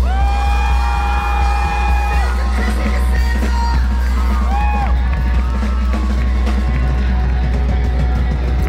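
Live rock band playing, heard from the crowd: loud drums, guitars and heavy bass, with a singer holding one long note for about the first two seconds and shorter sung phrases after it.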